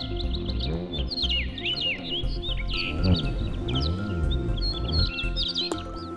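Background music with birds chirping over it in quick, gliding whistles; the chirping stops just before the end, leaving the music.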